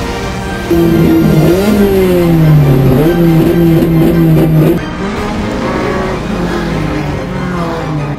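A race car's engine revving up and down over background music, loudest from about one to five seconds in, after which the music carries on with the engine lower.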